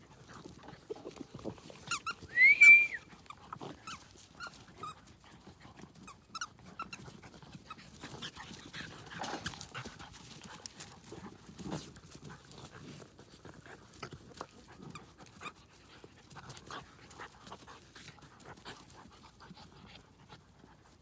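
Fox red Labrador puppies playing with plush toys on grass: scattered scuffles, rustles and light knocks throughout, with one short high squeal that rises and falls about two and a half seconds in, the loudest sound.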